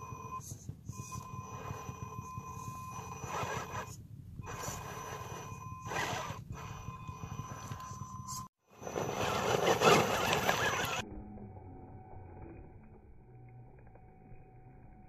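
Axial Bomber RC rock crawler's Castle 2280kv brushless motor whining at a steady high pitch as it creeps over rock, broken by several bursts of rough noise, the loudest about ten seconds in. About eleven seconds in the sound drops and turns muffled.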